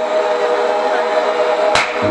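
DJ-mixed electronic dance music in a breakdown: sustained synth chords held without bass or drums, with a single sharp drum hit near the end as the beat comes back in.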